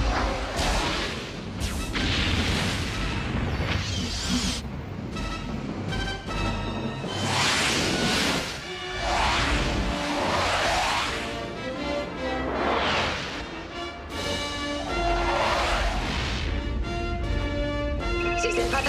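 Film score music with several loud whooshing swells of spacecraft flying past, and deep booms of explosions in a space battle.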